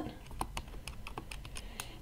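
Buttons of a scientific calculator being pressed: a quick run of light key clicks, roughly four to five a second, as a square root is keyed in.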